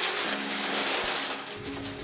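Oysters tumbling in a rotating perforated steel grading drum, a dense rushing rattle of shells that fades out about one and a half seconds in. Background music with sustained notes plays under it.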